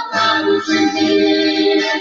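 A gospel song playing from an old tape recording: a passage of keyboard accompaniment with sustained chords and no words.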